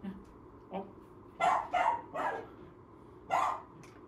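A small dog barking: three short, sharp barks in quick succession around the middle, and one more near the end.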